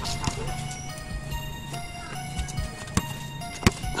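Background music with held tones, with a few sharp knocks, the loudest about three and a half seconds in.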